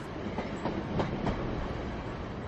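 Steady low outdoor rumble with a few faint, irregular clacks.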